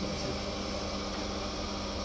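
Potter's wheel running with a steady hum and faint hiss as wet clay is worked on the spinning wheel head.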